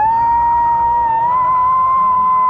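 A man's voice holding one long, loud, high falsetto note. He scoops up into it and steps slightly higher about a second in.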